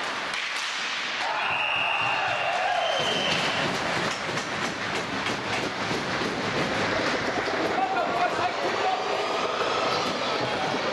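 Ice hockey being played on an indoor rink: skates scraping and rumbling on the ice, sticks and puck clacking, and players shouting. A high steady tone sounds about a second in and lasts about two seconds.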